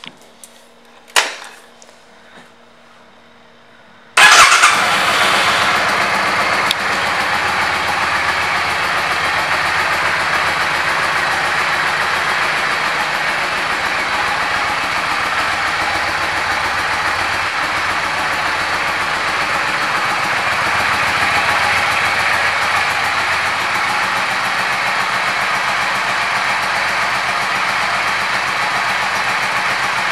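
2001 Yamaha V Star 650 Classic's air-cooled V-twin starting up about four seconds in, after a couple of short clicks, and settling into a steady idle.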